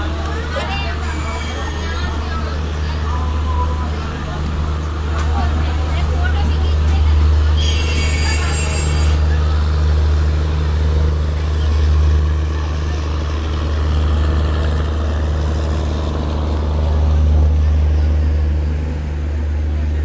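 Steady low rumble of a passenger train coach rolling slowly over the tracks, heard from its open doorway, with a brief high hiss about eight seconds in.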